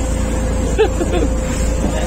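Small boat under way on choppy water: a steady motor hum with a constant whine and a low rumble throughout.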